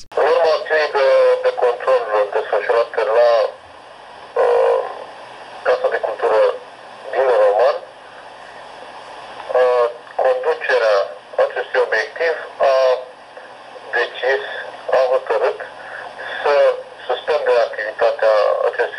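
A man speaking over a telephone line, his voice thin with the low end cut away.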